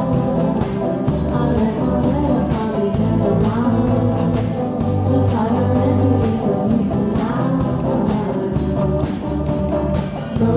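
Student band playing a pop song: a massed group of strummed acoustic guitars with electric bass and a drum kit keeping a steady beat, and a small group of voices singing the melody.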